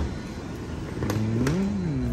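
Metro platform screen doors sliding open, their drive motor whining up and then back down in pitch over about a second, over a steady low rumble.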